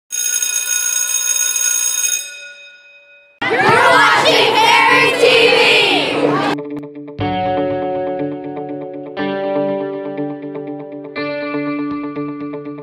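A bright ringing tone that fades away, then a group of kids shouting and cheering together for about three seconds, then electric guitar chords with effects, a new chord struck about every two seconds.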